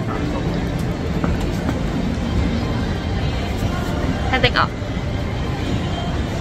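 Steady low rumble of outdoor city background noise on a phone microphone, with a short vocal sound about four and a half seconds in.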